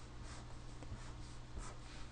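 Marker pen writing on paper: a few short, faint scratchy strokes as the figures are written, over a low steady hum.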